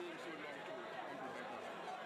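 Speech: several voices talking at once, a man's voice among overlapping crowd chatter.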